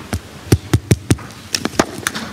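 Handheld microphone handling noise: a quick, irregular run of about eight dull thumps and knocks in two seconds as the microphone is passed to an audience member and gripped.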